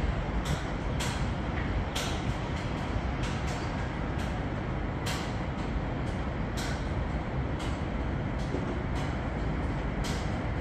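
Steady low rumble of distant city traffic heard from high above the streets, with short hissing rustles every second or so.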